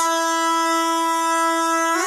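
Hip-hop track at a break: a single note held steady in pitch for about two seconds, with the bass and drums dropped out.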